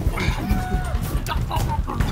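Players in inflatable bubble-soccer balls scrambling and bumping into each other, with short knocks and thuds, over men's shouts of "oh" and background music.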